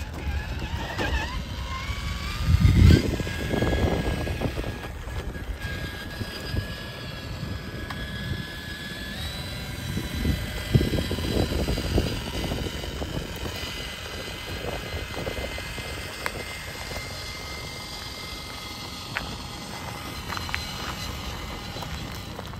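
Electric whine of a Traxxas TRX-4 RC crawler's Hobbywing Fusion Pro brushless motor and drivetrain as the truck crawls slowly over concrete and gravel, holding a few steady pitches that glide up early on and step higher about nine seconds in. Irregular low rumbling bursts run underneath, the loudest about three seconds in.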